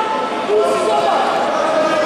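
Several people's voices overlapping, talking and calling out indistinctly.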